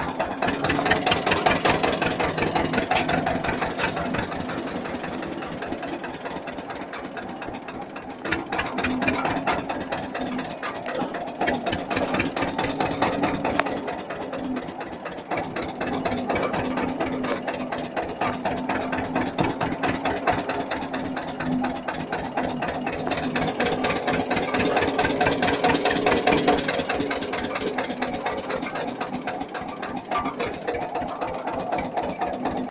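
Vehicle engine running steadily with a fast, even chugging beat while the vehicle moves slowly, swelling a little in loudness a few times.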